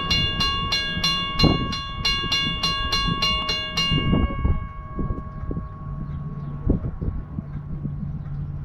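Steam locomotive bell ringing in quick, even strokes, stopping about four seconds in and ringing away, over a low steady hum with a few dull thumps.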